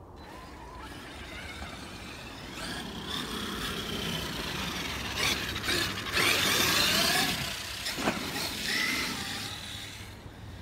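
Traxxas X-Maxx RC monster truck's brushless electric motor and gear drive whining as it runs on 8S power, the pitch rising and falling with the throttle and loudest about six to seven seconds in. A sharp knock comes about eight seconds in.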